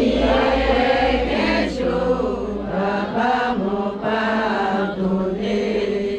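A group of women singing a chant together, many voices overlapping in short sung phrases.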